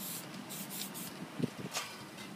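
Aerosol spray-paint can hissing in several short bursts. A soft knock about a second and a half in.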